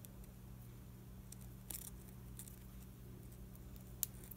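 Faint rustling and a few soft clicks of hand-sewing: a needle and thread drawn through burlap ribbon and a paperclip being handled, over a steady low hum.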